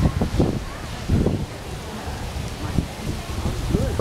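Wind buffeting the camera's microphone: an uneven low rumble over a steady hiss.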